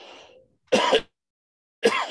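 A man's breath in, then a single short throat-clear about three-quarters of a second in, as he pauses mid-sentence.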